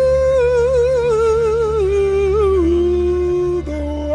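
Male gospel quartet singing a long wordless held line. The lead voice wavers with a wide vibrato and steps down in pitch in the second half, over a steady low accompaniment.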